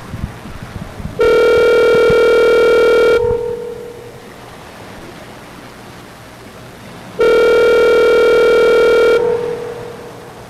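Telephone ringback tone heard down the line while a call waits to be answered: two rings, each a harsh steady tone about two seconds long, about four seconds apart, each trailing off into a fainter tone for about a second.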